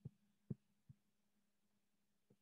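Near silence over a faint steady hum, broken by three soft, low thumps in the first second.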